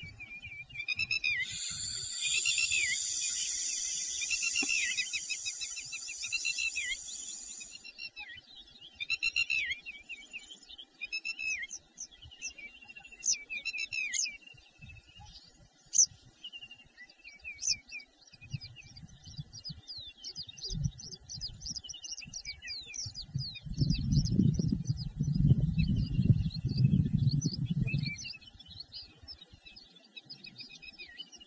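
Several birds chirping and calling: a dense, overlapping chorus of chirps for the first several seconds, then scattered single calls and quick trills. Near the end a low rumbling noise comes in for a few seconds.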